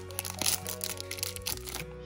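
A small foil blind-bag wrapper crinkling and tearing as it is pulled open by hand, a rapid run of crackles that stops shortly before the end. Steady background music plays underneath.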